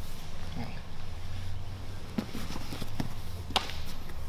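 Two grapplers shifting on a foam mat: a few soft thuds and slaps of hands and feet on the mat in the second half, over a steady low room hum.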